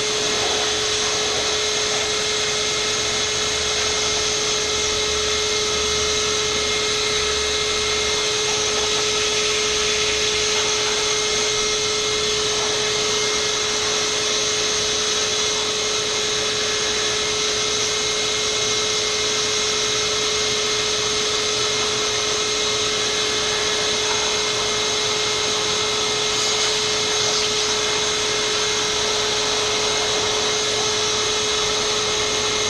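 Shop vacuum motor running steadily with a constant whine, its hose blowing air through an open desktop PC case to clear out dust.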